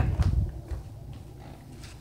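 Low, irregular rumble of a phone microphone being handled and carried, mostly in the first half second, then faint room noise.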